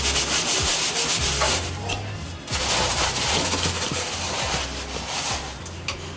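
Rubbing and scrubbing on the bare painted metal floor of a stripped car interior, in two long stretches of strokes with a short pause about two seconds in.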